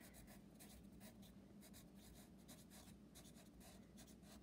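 Faint scratching of a wooden pencil writing by hand on a paper workbook page: a quick run of short strokes as words are written.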